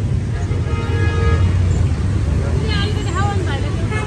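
Street traffic rumbling steadily, with a vehicle horn sounding for about a second near the start. A voice talks briefly near the end.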